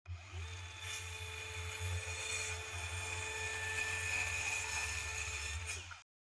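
A power tool's electric motor spins up quickly and runs steadily with a high whine over a hiss, then winds down and cuts off at the end.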